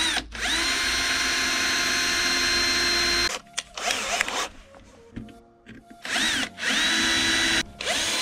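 Bosch cordless drill drilling a hole through a plastic tail-light bulb holder: the motor spins up with a rising whine and runs steadily for about three seconds, stops, gives a short burst, then runs again in two stretches near the end.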